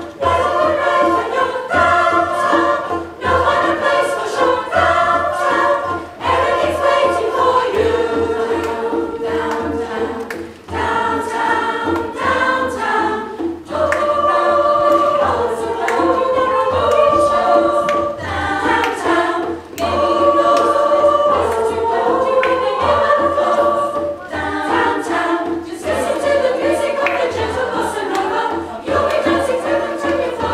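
A women's choir singing in harmony, several voices holding chords that move from note to note, over a low, steady pulse of accompaniment.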